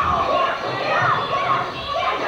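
Several raised voices yelling and calling at once, with faint music behind.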